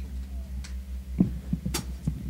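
Steady low electrical hum from the stage sound system, pulsing rapidly, with a sharp knock about a second in and a couple of fainter clicks near the end, like a microphone being handled.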